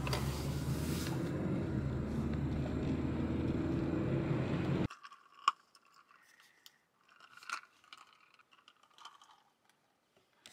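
Steady low rumble of a car's engine and road noise, heard inside the cabin while driving, which cuts off suddenly about five seconds in. Near silence follows, with a few faint clicks and scrapes.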